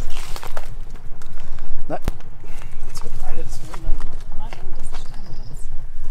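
A car door being opened, with a single sharp click of the latch about two seconds in, among low voices.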